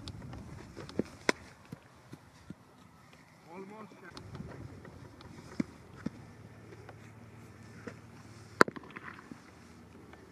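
A cricket ball struck by a bat about a second after the bowler's delivery, a sharp wooden knock, followed by several smaller knocks and a louder one near the end. Gusty wind buffets the microphone throughout as a low rumble.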